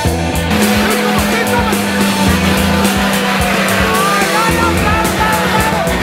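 Off-road 4x4's engine running hard as it pushes through deep mud, mixed with rock music; a steady drone sets in about half a second in.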